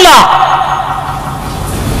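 A man's amplified voice: a word ends with a falling pitch, then a steady drawn-out tone that slowly fades.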